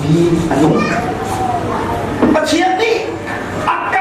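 Speech only: a man preaching emphatically into a handheld microphone.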